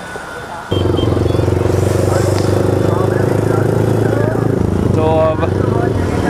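Motorcycle engine running steadily under the riding camera, setting in abruptly about a second in, with an even, unchanging pitch. A voice speaks briefly near the end.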